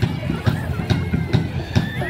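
People's voices over a steady low thumping beat, about two thumps a second.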